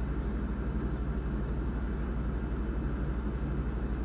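Steady low rumbling hum with a fast, even pulsing and a faint hiss above it: background room noise in a pause between words.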